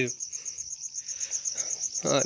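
A cricket chirping in the background: a high, evenly pulsing trill that goes on steadily.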